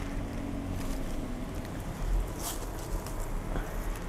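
Faint rustling of leaves and a couple of light knocks as a hanging staghorn fern in a plastic nursery pot is handled and lifted down, over a steady low rumble.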